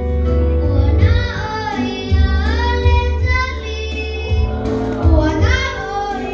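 Children singing into microphones over a musical accompaniment with a pulsing bass.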